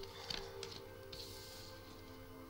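Soft background music with long held notes, under faint slides and taps of oracle cards being dealt onto a wooden table.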